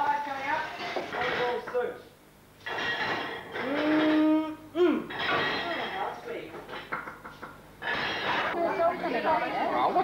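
Indistinct voices talking, with a short lull about two seconds in and one voice drawing out a long held note about three and a half seconds in.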